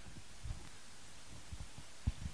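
Quiet room tone with a few faint low thuds, about half a second in and again near the end.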